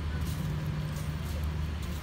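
Cats eating from a plastic plate, with faint small clicks of chewing. Under them runs a steady low rumble that is louder than the clicks.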